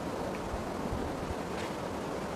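Steady rushing outdoor noise, wind buffeting the microphone, with water stirring as a man ducks under and comes back up in a muddy pond.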